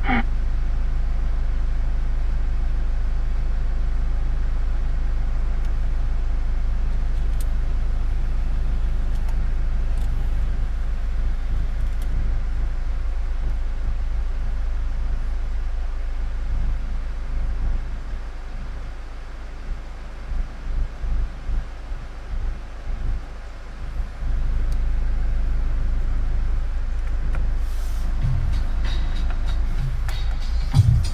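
Steady low rumble with an even hiss inside a car cabin. Past the middle it drops and turns uneven for about six seconds, then comes back up.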